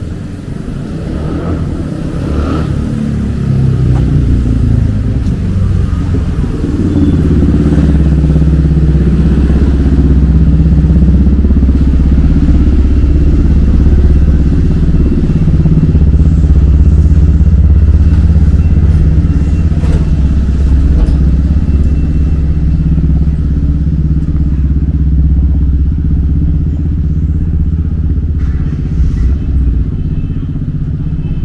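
A motor vehicle engine running close by, its pitch falling over the first few seconds, then running loud and steady for the rest.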